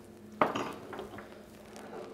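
A glass tumbler of water set down on a bar counter: one sharp knock about half a second in, followed by a few lighter clinks.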